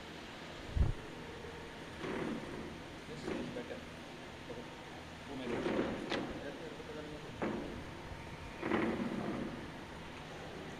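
Distant shouting voices come in short calls over faint open-air ambience from the pitch, with a low thump about a second in.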